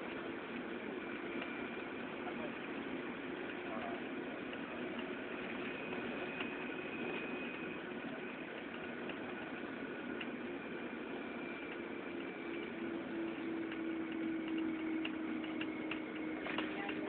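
Engine and road noise heard from inside a moving car, steady throughout, with an engine hum that grows stronger in the last few seconds.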